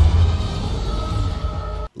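TV action-scene soundtrack: orchestral score music over a deep explosion rumble at the start, which eases into held music tones. The sound cuts off suddenly just before the end.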